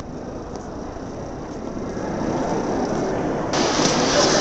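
Steady rumble and hiss of a large hall full of visitors. It sounds muffled at first, then turns abruptly brighter and fuller about three and a half seconds in.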